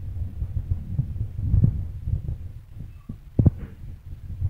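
Low, irregular thuds and rumbling, with two sharper knocks about three and a half seconds in.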